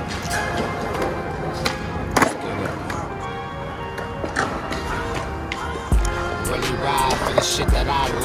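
Skateboard wheels rolling on concrete, with a few sharp clacks of the board, the loudest about two seconds in, over a hip-hop beat.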